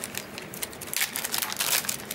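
Clear plastic packaging bag crinkling as hands open it and pull out a small part: a run of quick crackles that gets denser about a second in.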